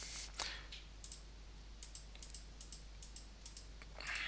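Computer mouse clicking: a run of faint, quick clicks, several a second and often in close pairs.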